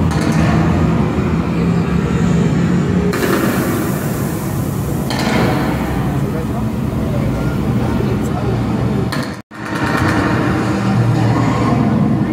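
Loud theme-park ride show soundtrack playing in a tram: a dense mix of voices, music and vehicle effects. It cuts out to silence for an instant about nine and a half seconds in.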